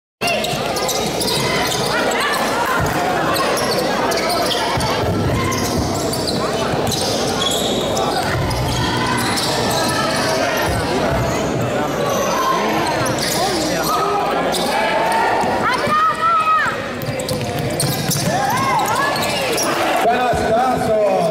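Basketball game in a large gym: a basketball bouncing on the court, with players' and spectators' voices throughout, echoing in the hall.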